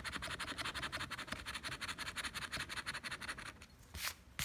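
Rapid scraping of a scratch-off lottery ticket's coating, in quick even strokes about ten a second. The scraping stops about three and a half seconds in, followed by a short click.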